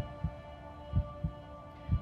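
Quiz-show tension music: a sustained synth drone with a heartbeat-like double thump about once a second, building suspense before an answer is revealed.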